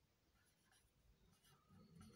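Very faint strokes of a marker pen writing on a whiteboard, a few short strokes in the second half.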